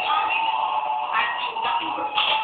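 Electronic noise music from a synthesizer setup: a steady high-pitched tone held under shifting, warbling tones above it, at a constant loud level.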